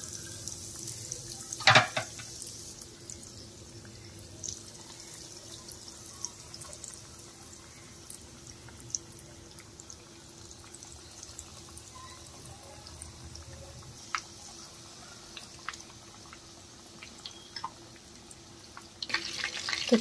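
Breaded chicken popsicles frying in hot oil on a low-to-medium flame: a soft, steady sizzle with scattered small crackles. One louder knock comes about two seconds in, and a faint low hum runs underneath.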